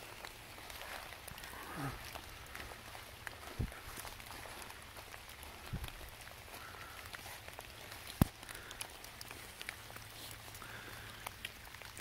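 Light rain and a trickling forest stream, with footsteps on wet leaf litter. A few soft knocks, and one sharp snap about eight seconds in.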